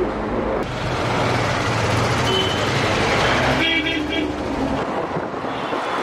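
Road and engine noise inside a moving van in city traffic: a steady rush that grows louder just under a second in. About three and a half seconds in, a vehicle horn sounds for about a second.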